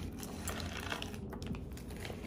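Light, scattered clicks of small jewelry being handled, over a low room hum.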